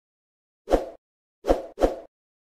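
Three short pop sound effects from an animated end screen: the first about two-thirds of a second in, the other two close together near the end, with dead silence between them.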